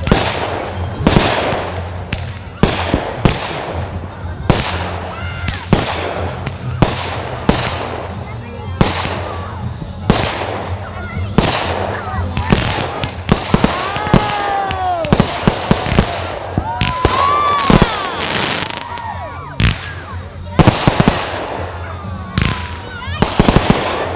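Aerial fireworks going off in a rapid series of sharp bangs, one or two a second. A few whistles glide up and down in pitch about halfway through, and there is a quick flurry of crackling near the end.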